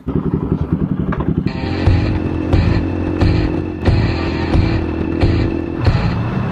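Motorcycle engine running, with loud background music with a steady beat coming in over it about a second and a half in.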